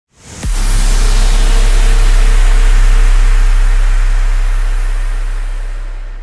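Cinematic logo-reveal sound effect: a heavy boom about half a second in, whose deep rumble and hiss hold and then fade slowly.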